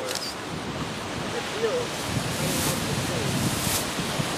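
Steady wind buffeting the microphone over lake waves washing on a rocky shore, the low rumble swelling about halfway through, with faint voices in the background.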